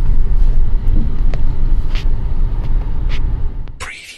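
Car crawling in first gear over a rough unpaved track, heard from inside the cabin: a steady low rumble of engine and tyres, broken by a few sharp knocks. It fades and cuts off near the end.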